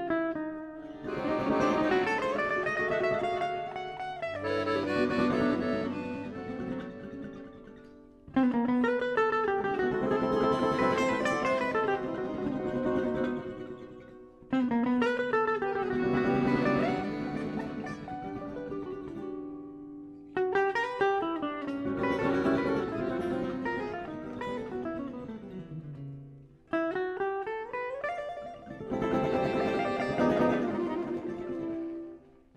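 Live gypsy-jazz band of accordion and two acoustic guitars playing a slow tune with a Latin feel. Sustained accordion melody lines run over plucked guitar chords, in phrases that each start with a sudden attack.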